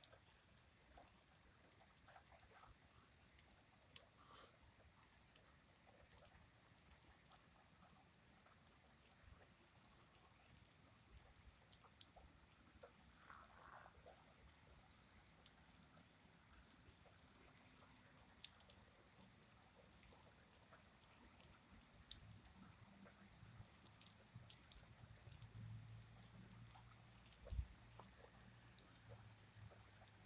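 Very faint rain: scattered light raindrop ticks, with a low rumble building over the last several seconds and a single thump near the end.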